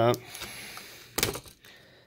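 Laptop battery cable's plastic multi-pin connector pulled up out of its socket on the motherboard, giving one sharp click a little over a second in as it comes free.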